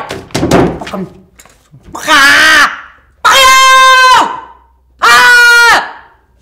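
A woman screaming in three loud, drawn-out bursts about a second apart, the first wavering and the last two held at one pitch. Papers slap onto a desk a few times just before the first scream.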